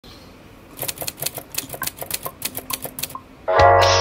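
A quick run of typing clicks, about six a second, like a typewriter sound effect, for about two and a half seconds. Near the end a pop music track comes in with a steady bass and chords.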